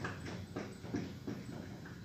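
Marker pen writing on a whiteboard: a quick run of short strokes and taps as letters are written.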